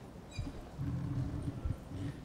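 Microphone handling noise: low rumbling and a few dull knocks as the lectern microphone is lifted off its stand and held in the hand.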